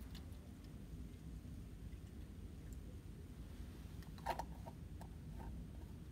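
Sterile water poured faintly from a small plastic cup into a container on a sterile field, with a single sharp clack about four seconds in and a few lighter taps after it.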